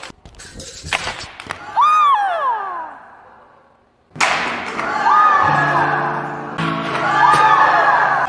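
A few sharp knocks from swinging nunchaku, then a falling whistle-like tone about two seconds in. After a second of near quiet, TV-show background music with a wavering melody comes in.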